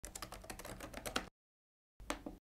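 Fast typing on a Chromebook keyboard, a quick run of keystrokes as login details are entered, stopping abruptly just over a second in.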